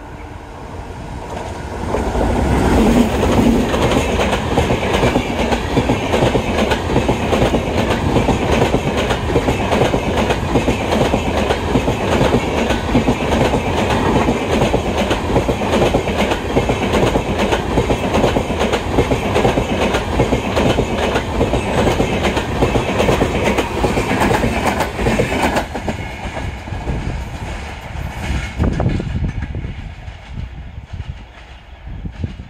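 Express train with an electric locomotive and passenger coaches passing close by at speed. The wheels clatter over the rail joints in a dense, rapid run of clicks under a steady rumble. It swells loud about two seconds in and falls away near the end.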